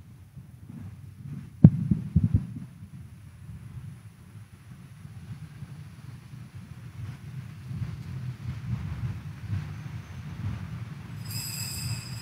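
Low, steady rumble of a large church's room sound during a quiet moment of the Mass, with a sharp knock about a second and a half in, followed by a few softer knocks. Near the end a brief high ringing tone sounds.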